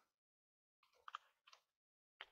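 Near silence with a few faint clicks from a computer's mouse and keys as text is selected and copied: a quick pair about a second in and one more half a second later.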